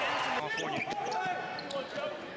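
Basketball game sound on a hardwood court: a ball bouncing amid arena crowd voices, with an edit to another play under a second in.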